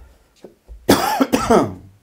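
A man coughing loudly twice in quick succession, about a second in.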